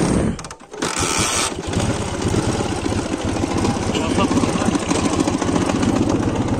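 Dnepr motorcycle's flat-twin engine being started: a short burst at first, then it catches about a second in and runs on with steady, even firing pulses.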